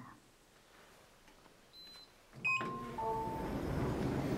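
Elevator at a landing: a short high beep about two seconds in, then a click and a chime of a few held tones, followed by a steady low rumble as the lift doors open.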